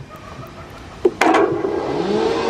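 A putter strikes a mini-golf ball with a sharp click about a second in. The ball then rolls along the course surface toward the microphone with a steady rumble.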